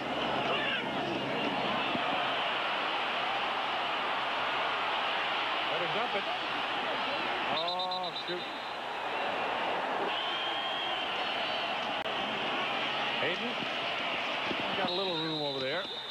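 Stadium crowd noise from a large football crowd, steady throughout. A short shrill tone stands out with it about eight seconds in and again near the end.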